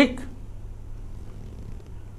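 The end of a man's spoken word, then a pause holding only a steady low hum and faint hiss in the background.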